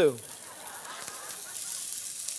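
Head-on prawns sizzling as they sear in hot oil in a stainless steel sauté pan, a steady hiss.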